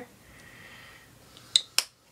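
Two sharp clicks about a quarter second apart, about a second and a half in, from the plastic tube of acrylic paint being handled after paint is squeezed into a plastic palette well; before them only a faint hiss.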